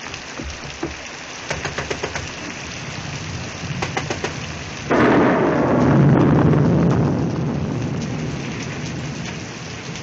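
Steady rain falling, with a clap of thunder about halfway through that starts suddenly and rolls away slowly over the following seconds.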